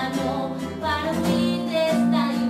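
A woman singing a Spanish-language song to a strummed classical guitar: an acoustic cover of an anime theme song, with a long held note near the end.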